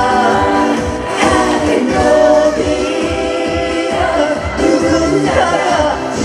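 Upbeat Korean pop song performed live through a stage PA: singing over a backing track with a steady beat.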